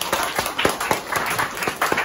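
A small group of people clapping, with separate, uneven hand claps, applauding the close of a sale.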